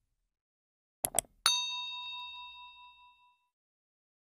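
Subscribe-button sound effects: two quick clicks about a second in, then a notification bell dings once and rings out, fading over about two seconds.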